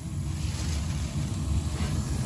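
Slant Fin Century gas boiler's burner running just after lighting on a call for heat: a steady low rumble of the gas flames.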